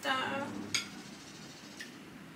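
Metal fork clinking once against a plate a little under a second in, with a fainter tick near the end.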